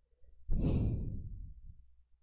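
A man's sigh, a single breathy exhale close to the microphone, starting suddenly about half a second in and fading away over a second or so.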